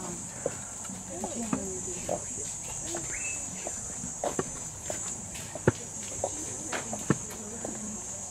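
Insects droning steadily at a high pitch, with scattered footsteps of a group walking on a dirt path and faint voices of the walkers.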